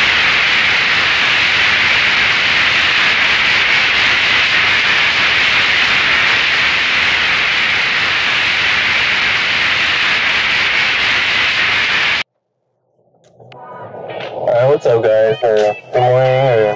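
TV static sound effect: a steady white-noise hiss that cuts off abruptly about twelve seconds in. After about a second of silence, music fades in near the end.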